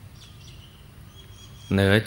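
Faint steady background noise and hum of an outdoor recording with a few faint high chirps, then a man's voice resumes speaking near the end.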